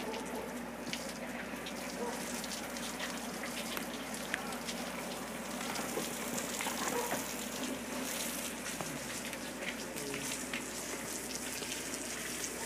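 Steady splashing and rushing of water, with scattered small ticks.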